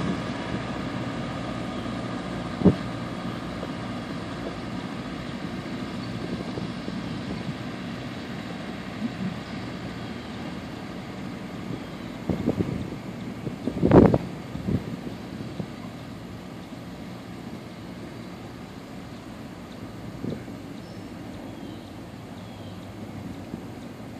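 Diesel-hauled passenger train rolling away on the track: a steady rumble of coach wheels and distant locomotive engine that slowly fades. A few short sharp thumps break through, the loudest about 14 seconds in.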